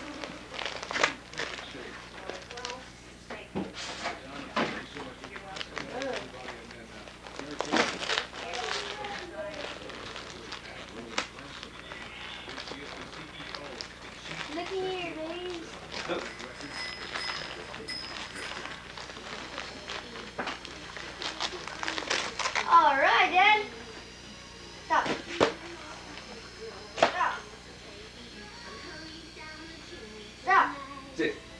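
Rustling and crackling of gift wrap and packaging as a present is unwrapped and handled, in scattered short bursts, with a few brief snatches of voices.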